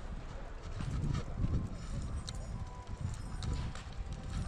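Wind buffeting the microphone of a bicycle-mounted GoPro during a ride, heard as a gusty low rumble, with scattered sharp clicks and rattles throughout.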